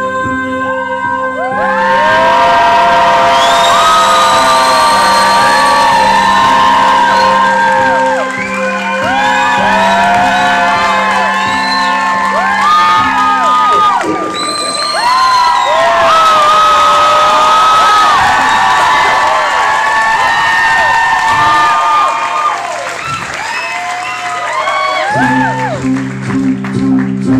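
Concert audience cheering, whooping and screaming, many voices overlapping, over low held instrumental chords. The chords drop out after about eight seconds and come back near the end.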